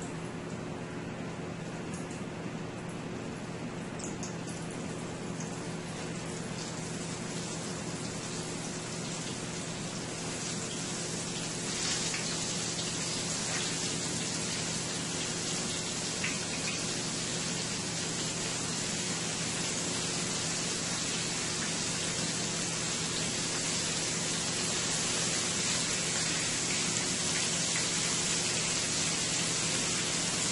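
Flour-dredged butterfish fillets sizzling in hot oil in a stainless steel skillet, the sizzle growing louder about ten to twelve seconds in as more pieces are laid into the pan, with a few light clicks.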